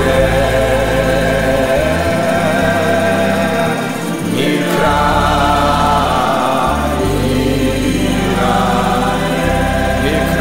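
Gospel worship music: a choir singing over long held bass notes.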